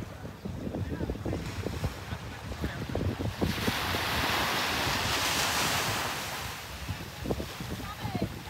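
Ocean surf on a beach: a wave breaks and washes in as a swell of noise lasting about three seconds in the middle, over wind buffeting the microphone.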